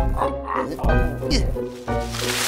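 Cartoon background music with short, wordless voice sounds from a cartoon character.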